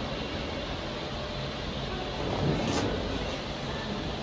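Steady background hum and hiss of a big store's interior, with a brief faint swell about two and a half seconds in.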